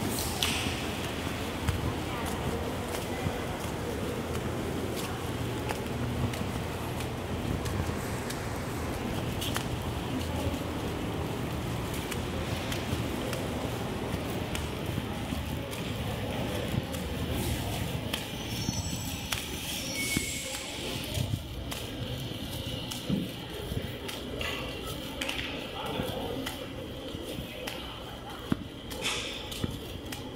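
Reverberant background hubbub of a large bus-terminal hall: indistinct distant voices and general room noise, a little thinner in the second half.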